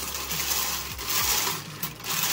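Wire bingo cage being cranked round, the bingo balls tumbling and rattling against each other and the wire in a steady clatter.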